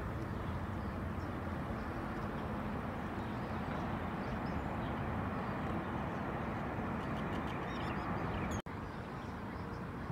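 Steady outdoor background noise with faint bird calls over it. The sound cuts out for an instant near the end.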